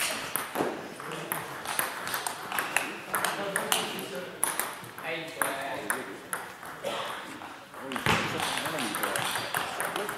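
Table tennis balls clicking off tables and bats in repeated short sharp knocks, over background voices in the hall.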